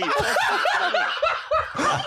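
Several men laughing, a quick run of short, bouncing bursts with a few voices overlapping.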